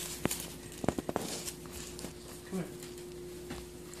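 A few sharp clicks and light handling noises from gloved hands and a blade at the skin, over a faint steady hum.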